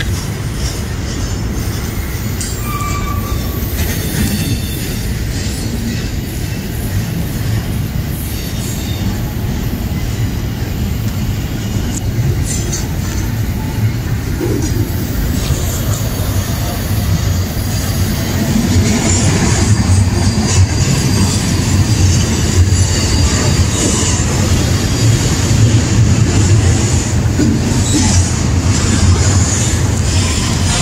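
Double-stack intermodal freight train rolling past close by: a steady rumble of steel wheels on rail, with brief high squeals and clanks, growing louder from about 18 seconds in as the cars pass nearer.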